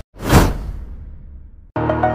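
A whoosh sound effect that swells quickly and fades away over about a second. Background music with a plucked melody starts just before the end.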